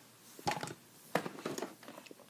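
Light handling noises: short taps and rustles as a vinyl Funko Pop figure is set down and a boxed figure in its cardboard-and-plastic window box is picked up. They come in two brief clusters, one about half a second in and a longer one from just after a second.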